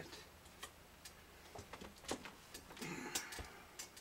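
Faint handling sounds of a cloth rag wiping glue squeeze-out from a guitar's neck joint: irregular small clicks and brief rubbing, busiest about halfway through.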